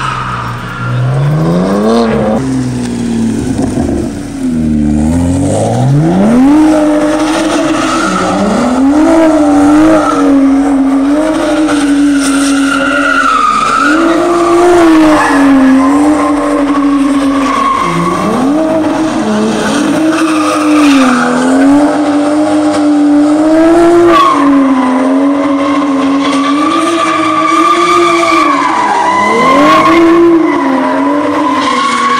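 A car doing donuts: the engine revs up hard twice in the first few seconds, then is held at high revs that dip and climb again every few seconds as it circles. Tires squeal and skid throughout.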